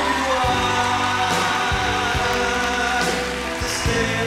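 Live pop band playing an instrumental passage between sung lines, with held chords and several drum hits.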